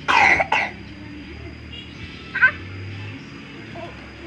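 Two quick, harsh coughs right at the start, then a shorter, quieter throaty sound about two and a half seconds in.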